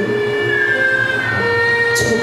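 Haegeum (Korean two-string bowed fiddle) playing long held high notes that slide between pitches over a soft, sustained instrumental backing.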